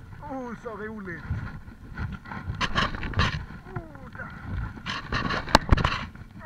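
Gulls calling: a quick series of falling cries near the start and a single falling cry about halfway through, over bursts of water splashing against the boat's hull and wind noise.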